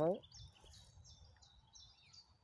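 Faint, high bird chirps in the background, a quick run of short notes after a man's single spoken word at the start.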